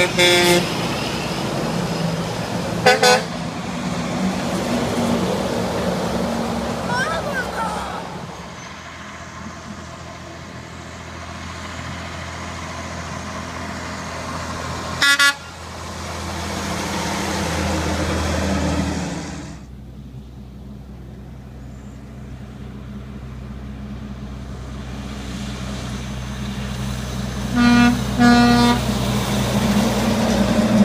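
Horns of passing trucks, sounded in answer to a child's arm-pump signal: a horn blast at the start, a short one about three seconds in, a brief loud blast midway and two short toots near the end. Between them runs the low rumble of heavy trucks passing, swelling midway.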